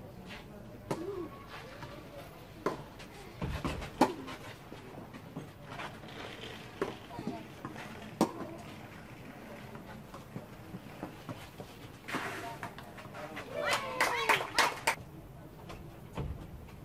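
Tennis balls struck by rackets on a clay court: sharp pops at irregular spacing, the loudest about four and eight seconds in. Voices talking near the end.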